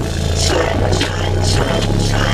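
Bass-heavy music played loud through a car-audio system with a Sundown Audio ZV4 15-inch subwoofer, heard inside the truck cab. Long, deep bass notes are held under light hi-hat ticks, and the bass note changes about one and a half seconds in.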